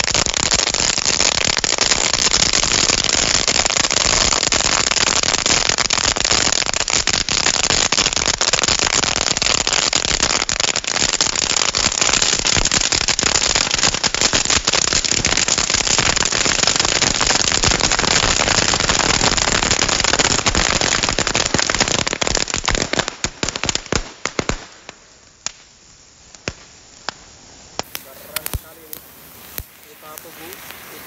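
A big heap of sparklers, fountain cones and dino-egg crackers burning together: a loud, dense fizzing hiss full of crackling pops. About 24 seconds in it suddenly drops away as the fireworks burn out, leaving scattered snaps and crackles.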